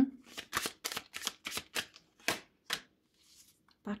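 A tarot deck being shuffled by hand: a quick run of soft card slaps, about six a second for two seconds, then a few slower ones and a brief faint rustle.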